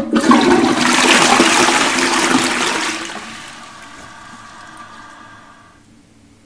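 Toilet flushing: a loud rush of water that starts suddenly, holds for about three seconds, then fades away over the next few seconds.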